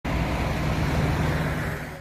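A motor vehicle engine running steadily amid road traffic noise, fading out near the end.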